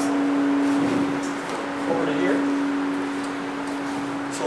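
A large carillon bell ringing on after being struck, its low hum note held steady and slowly dying away while fainter higher partials fade out.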